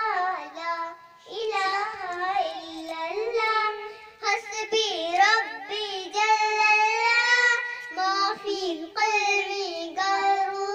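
A young girl singing a naat solo, with sliding, ornamented notes and a long, wavering held note about six seconds in.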